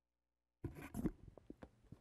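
Dead silence for about half a second, then soft rustling and several small clicks close to a meeting microphone: handling noise just before someone speaks.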